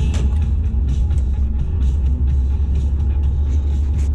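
Steady low road and engine rumble inside a moving car's cabin, with music playing along with it.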